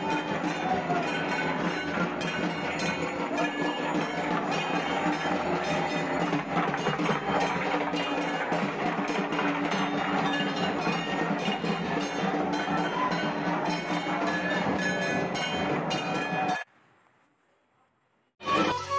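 Dhak drums played fast, a dense, steady clatter of strikes with some ringing tones over it. It cuts off suddenly near the end.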